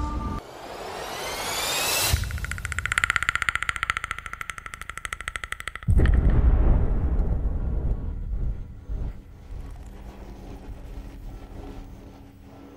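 Trailer sound design: rising whooshes build to a hit about two seconds in, followed by a fast pulsing tone. A deep boom lands about six seconds in and dies away into a quiet low drone.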